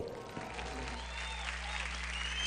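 Studio audience applauding after the guest musician is introduced, a steady patter of clapping, with a low steady hum setting in underneath about half a second in.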